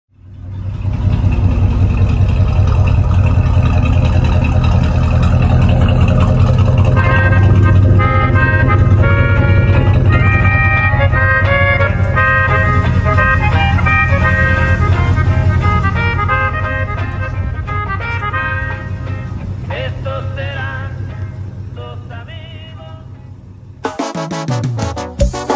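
An old vehicle's engine running with a deep, steady rumble, heard from inside the cab. About seven seconds in, music with sustained notes joins it, and both fade down toward the end.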